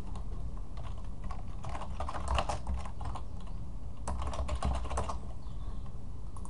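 Typing on a computer keyboard: two quick runs of key clicks, one near the middle and one about a second later, over a steady low hum.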